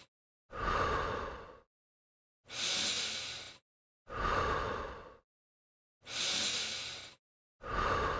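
A person breathing deeply in a slow, even rhythm. Breaths in and out take turns, five in all, each about a second long with short silences between: the paced breathing that goes with an abdominal curl exercise.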